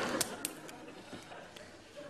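Studio audience laughter dying away, with a few sharp clicks in the first half second as small objects are handled at a desk.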